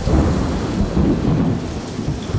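A loud, deep rumble that starts suddenly at the outset and carries on, with a faint hiss over it.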